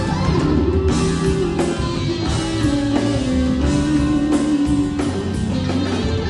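Live band playing: electric guitars, bass and a drum kit, with a bending melodic lead line over a steady beat.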